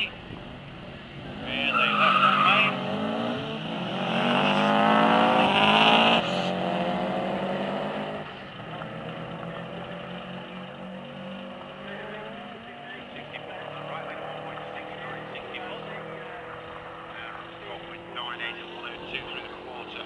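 Two Subaru Imprezas launching off a drag strip start line: a short tyre squeal near two seconds in, then engines revving hard with the pitch climbing until a gear change cuts it off around six seconds. After that the engine note fades and slowly drops as the cars run away down the strip.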